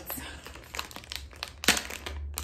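Clear plastic packaging bag crinkling as it is handled, with irregular crackles and a sharper, louder crackle near the end.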